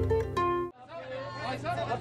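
The last notes of a news intro jingle, cut off suddenly under a second in, followed by fainter talking.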